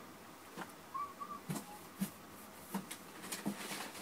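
Light knocks and rustles of cardboard figure boxes being handled, set down and picked up, with a faint short two-note chirp about a second in.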